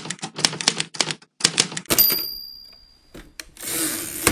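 Typewriter typing: a quick run of keystrokes, then a single bell ding about two seconds in that rings away, followed near the end by a sliding swish and knock of the carriage being returned.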